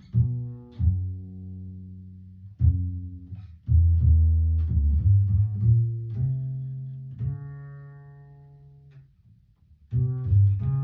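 Homemade double bass with a heat-formed polycarbonate body, played pizzicato: a loose run of plucked low notes, some sliding in pitch, each ringing out. A higher note about seven seconds in rings down almost to silence before another pluck at the very end.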